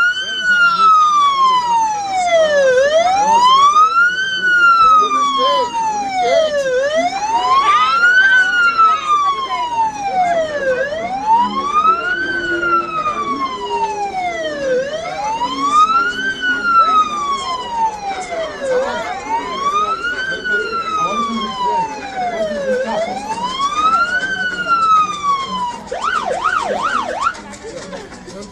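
Police car's electronic siren on wail, rising and falling slowly about every four seconds, seven times over, then switching to a few quick yelps before cutting off.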